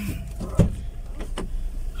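Inside a car, a single heavy thump about half a second in, then a couple of light clicks, over a low steady rumble.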